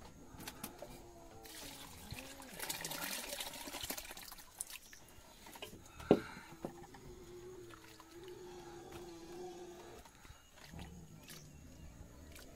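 Water poured and sloshing from a blackened cooking pot into a plastic bucket of pig feed, with a single sharp knock about six seconds in. A steady whining tone follows for a few seconds.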